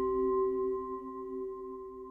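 A resonant metallic ringing tone, like a struck singing bowl or bell, made of several steady overtones that fade away over the two seconds.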